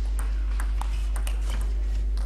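Table tennis rally: the celluloid ball clicking off the rackets and the table in quick succession, several hits a second, over a steady low hum.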